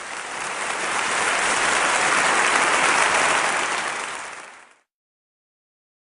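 Audience applauding, building over the first couple of seconds and dying away about four and a half seconds in.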